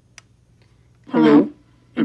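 A single spoken "hello" through the WS-1816 Bluetooth karaoke microphone's built-in speaker, with the voice changer shifting it to a deeper tone, about a second in. It is preceded by a faint click from the microphone's button.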